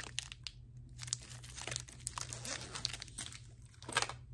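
Plastic packets and wrappers crinkling and rustling as they are handled inside a small zippered pouch, with scattered light clicks and taps and a sharper click at the very end.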